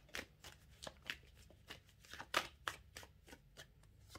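A deck of tarot cards being shuffled by hand: a string of irregular, quick soft card flicks, loudest a little past two seconds in.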